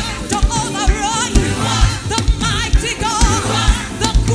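Live gospel praise music: a group of singers with wavering, vibrato-laden voices over a band with a steady beat of about two beats a second.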